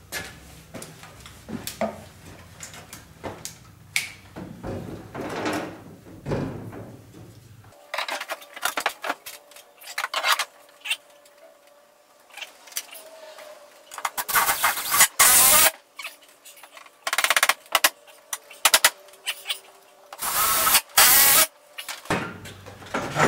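Scattered knocks and clatter of a 2x4 being handled against the wall, then a cordless drill driving screws in several loud bursts of about a second each in the last eight seconds.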